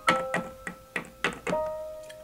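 Background piano music: a slow run of single struck notes, each ringing on.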